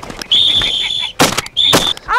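A dog whistle blown by a hunter to signal his pointing dog: one long steady high-pitched blast, a brief loud rushing burst, then a second short blast on the same note.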